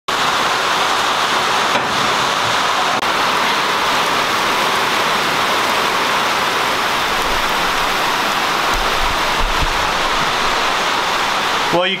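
Heavy rain in a downpour, a steady loud hiss, pouring onto a steel shipping container.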